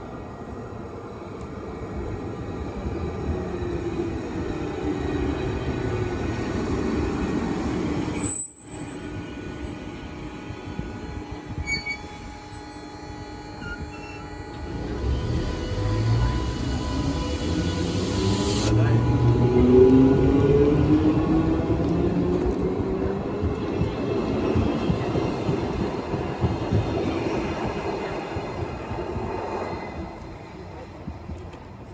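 Narrow-gauge electric commuter train running into the station, its rumble building over the first several seconds. After a sharp click partway through, a train pulls away from the platform with a rising whine from its traction motors over the wheel and rail rumble, easing off near the end.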